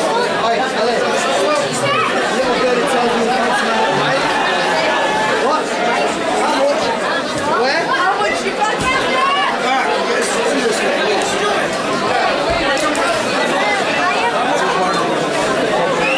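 Crowd chatter: many voices talking at once in a large hall, none standing out.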